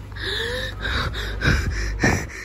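A person's breathy laughter: short gasping breaths that come in quick pulses over a low background rumble.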